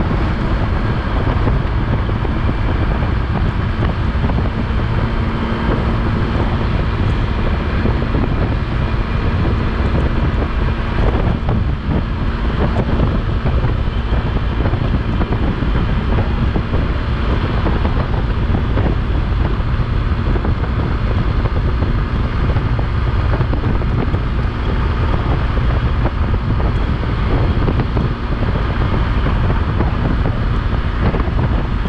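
Motorcycle running at cruising speed on the open road, its engine a steady hum under loud wind rush buffeting the microphone.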